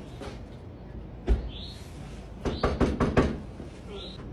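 Knocking on a front door: a single knock about a second in, then a quick run of about six knocks.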